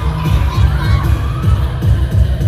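A crowd of fans screaming and cheering over loud dance-pop music with a steady heavy bass beat, heard at a live concert from within the audience.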